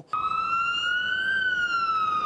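Fire-rescue truck's siren wailing, starting just after a brief gap. Its pitch rises slowly for about a second, then begins a slow fall.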